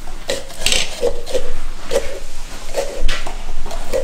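Small hand pumpkin-carving saws rasping through pumpkin rind, with tools and spoons clinking on the stone countertop, in a string of short strokes.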